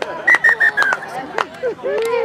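A referee's whistle, four short blasts close together in the first second, over sideline voices.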